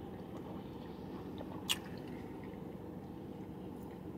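A man sipping and swallowing a cold lemonade from a foam cup, with one short sharp mouth click about two seconds in, over a steady low hum.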